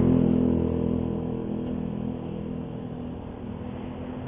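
A motor vehicle engine running with a steady hum, loudest at first and fading over the first two seconds to a lower, even drone.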